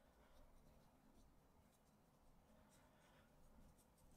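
Near silence, with faint scattered strokes of a paintbrush sweeping over textured watercolor paper.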